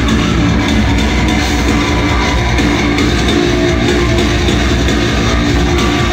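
Live tech-metal band playing loud and steady: heavy guitars over a drum kit.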